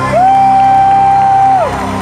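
A single voice holds one long high note for about a second and a half, sliding up into it and dropping off at the end. It rises over worship music and the sound of a large congregation.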